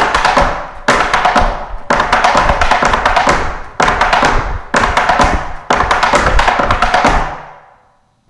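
Metal taps on tap shoes striking a raised plywood tap board in fast, dense runs of clicks, a new run starting about every second: a tap dancer's four-sound step with a one-footed pull-back.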